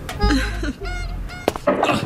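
Comic sound effects over background music: a run of short pitched squawks that bend up and down in pitch, then a sharp crack and a noisy clattering thud near the end as a man falls on a carpeted staircase.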